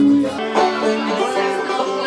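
Live acoustic music: a held note from the guitar duo breaks off about half a second in, and a banjo is picked in quick plucked notes from then on.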